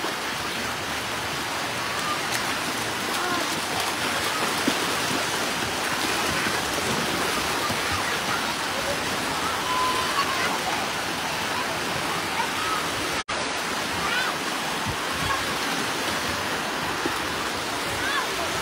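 Steady rush of water in a wave pool, with faint shouts of swimmers in the distance. The sound drops out for an instant about thirteen seconds in.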